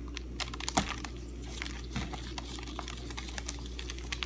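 Shredded kunafa (kataifi) pastry strands being pulled apart by gloved hands, giving an irregular run of soft crackling clicks and rustles.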